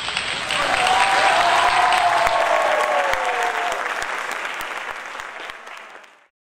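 Audience applauding, with a drawn-out voice calling out over it that falls in pitch. The applause fades away toward the end.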